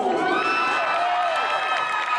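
Crowd cheering, with several voices overlapping in long, drawn-out high-pitched shouts.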